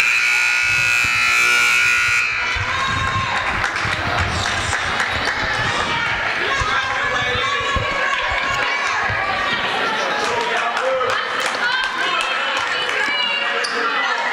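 Gym scoreboard buzzer sounding for about two seconds, signalling the end of a timeout, followed by the steady hubbub of spectators talking in the gym.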